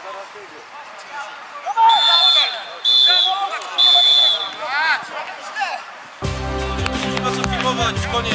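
Referee's whistle blown in three short blasts about a second apart, the signal for full time, with men's voices calling around it. Music starts about six seconds in.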